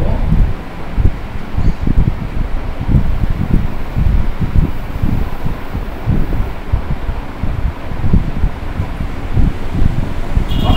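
Wind buffeting the microphone: a loud, uneven low rumble that surges and dips irregularly, with no speech over it.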